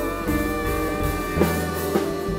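Live jazz band playing: guitar, double bass and drums under long held melody notes.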